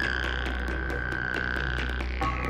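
Electronic music from a live DJ mix: a steady deep bass under evenly ticking percussion at about four ticks a second, with a held synth tone that slides down slightly at the start and cuts off near the end.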